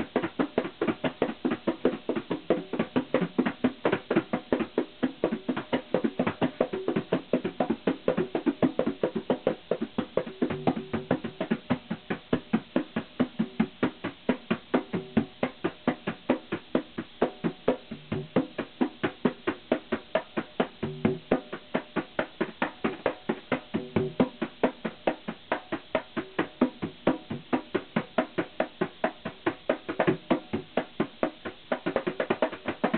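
A set of congas played with bare hands in a fast, steady stream of strokes, the pitched tones of the different drums ringing out in turn.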